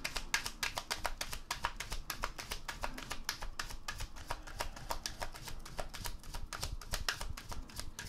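A deck of tarot cards being overhand-shuffled, the packets of cards slapping and flicking together in a rapid, even run of soft clicks, several a second.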